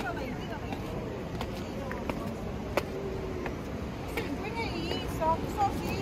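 Steady rush of surf and wind by the sea, with a few footsteps on stone steps and voices of other people talking near the end.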